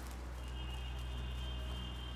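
A steady low hum, joined about half a second in by a thin, high, steady tone, with faint clicks scattered through.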